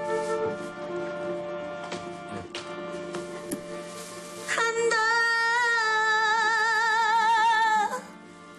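Music: held instrumental notes, then about halfway through a woman's singing voice comes in loudly with a wide vibrato and holds one long note.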